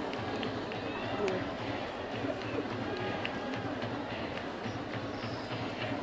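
Steady baseball stadium crowd noise: many voices mixing into a continuous hubbub.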